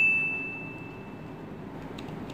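A single high ding, one clear pitch, ringing on and fading away over about a second and a half.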